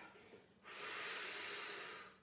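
A woman's long, forceful exhale, a steady hiss that starts just after half a second in and lasts about a second and a half: the Pilates breath out on the effort as she lifts her leg.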